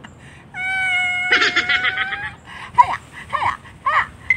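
People yelling and laughing. One long, high, held cry comes first, with laughter over its second half, then several short rising and falling whoops near the end.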